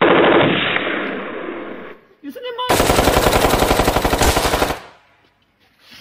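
Machine-gun sound effect dubbed over the picture: a dense burst that fades over about two seconds, then after a short gap a rapid, evenly spaced burst of gunfire lasting about two seconds that stops suddenly.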